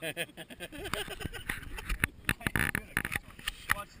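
People laughing, with a run of short knocks and rubbing from the camera being moved against an inflatable vinyl river tube.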